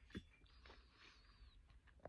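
Near silence: room tone, with one faint click just after the start.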